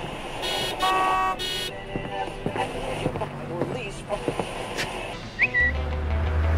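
Busy street ambience with passers-by talking and a car horn honking twice, about a second in. Near the end a short rising chirp sounds and a loud, deep low tone comes in.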